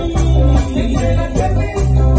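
Live bachata band playing: a plucked lead guitar melody over deep bass pulses, with a güira's metal scraping keeping a steady rhythm.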